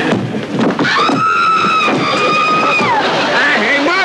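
A couple of sharp knocks near the start, then a woman's long, high scream held for about two seconds at one pitch and sliding down near the end, with laughter.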